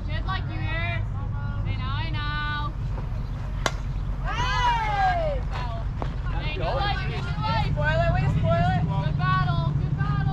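Young female softball players shouting and chanting in high-pitched voices, with a single sharp crack about four seconds in, over a steady low rumble.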